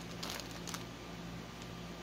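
Quiet steady room hum with a few faint rustles from hands handling a stiff printed cross-stitch canvas and a tape measure, in the first second.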